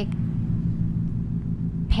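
Steady low background hum and rumble, with a short low thump just before the end.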